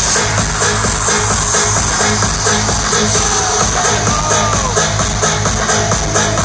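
Electronic dance music from a live DJ set playing loud over a large venue's sound system, with a steady kick drum beat and heavy bass.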